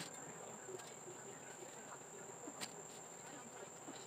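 Faint, steady, high-pitched trill of crickets, with a few light clicks and knocks of goods handled on shelves, the sharpest about two and a half seconds in.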